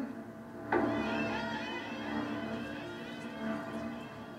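Horror-film trailer soundtrack played through the hall's speakers: music that comes in suddenly about three quarters of a second in and holds, with wavering high lines over it.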